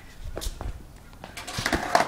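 Skateboard knocking against concrete as it is set down and stepped on, a few scattered knocks with the loudest near the end.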